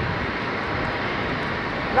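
Steady urban outdoor background noise: a continuous, even rush with no distinct events.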